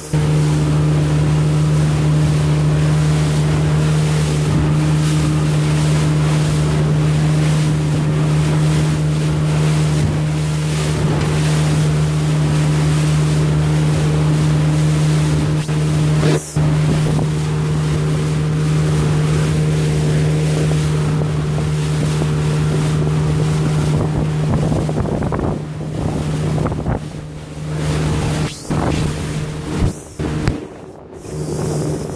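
Outboard motor running at steady cruising speed with a constant deep hum, over the loud rush of water and wind buffeting the microphone. The sound breaks off briefly just past halfway, and turns uneven with dips in the last few seconds.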